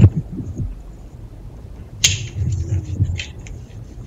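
Muffled thuds and rustling handling noise in a covert phone audio recording, with one sharp knock about two seconds in.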